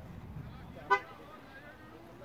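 Two longswords clash once about a second in: a single sharp strike of blade on blade with a brief ringing tone.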